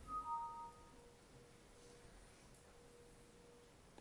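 A two-note chime: a high ringing tone with a slightly lower one joining a moment later, both fading out within about a second, over a faint steady hum.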